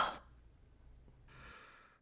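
Near silence, broken a little past the middle by one faint, short breath.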